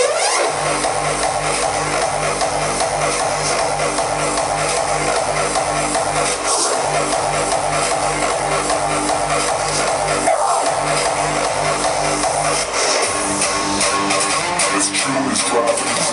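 Hardstyle dance music played live by DJs over a large arena sound system, with a steady pounding kick drum and bass line. The kick and bass drop out briefly twice in the second half before coming back.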